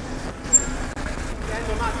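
Panel van driving past on the street: a steady road-traffic rumble of engine and tyres.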